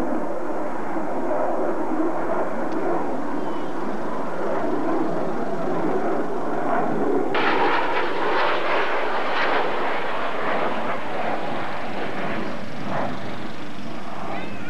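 Jet fighter flying overhead, its engines a loud continuous roar that turns suddenly harsher and brighter about seven seconds in.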